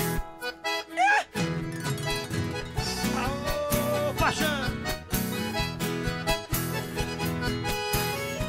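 Accordion playing an instrumental break in a sertanejo song, over strummed acoustic guitar, with a couple of short vocal calls sliding in pitch.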